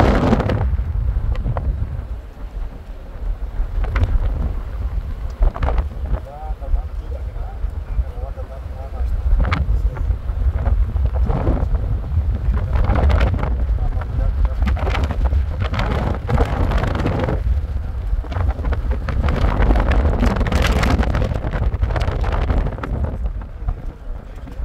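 Wind buffeting the microphone of a camera in a moving car: a heavy low rumble that rises and falls, with road noise underneath.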